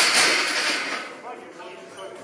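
Loaded barbell crashing down onto the power rack's steel safety bars after a failed squat. The impact is sharp and dies away over about a second.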